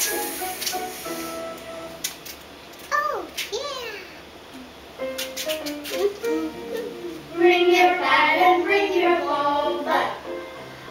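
A young child singing a phonics song, with a swooping slide down in pitch about three seconds in. The singing grows louder in the second half.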